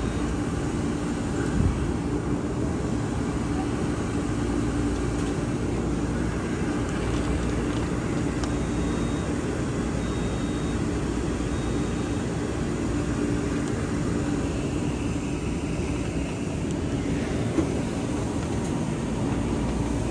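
Long Island Rail Road M9 electric multiple-unit train humming steadily at the platform, with a low drone and a steady mid-pitched tone from its on-board equipment. Near the end it begins to pull out.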